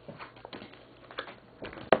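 A few light, sharp taps and clicks of round cardboard cards being handled and touched on a table top.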